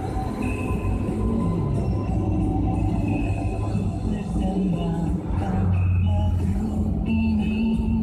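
Music playing from the car radio, heard inside a moving car's cabin over a low rumble of engine and road noise.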